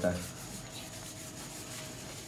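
Paintbrush scrubbing acrylic paint onto canvas: a soft, even rubbing.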